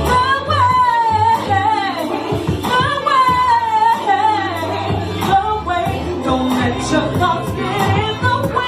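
A woman singing an R&B song live into a handheld microphone, with long sliding runs on held notes, over a backing track with a steady bass line and beat.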